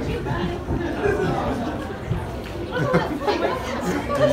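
Indistinct talking and chatter from a roomful of people, recorded on a phone in a large hall.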